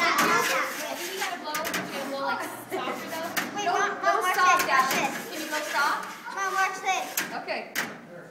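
Children's voices chattering and calling out while they play, with a few short sharp knocks among them.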